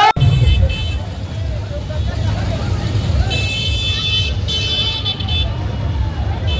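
Steady low rumble of street traffic with vehicle horns honking in two bursts, each about a second long, starting about three seconds in.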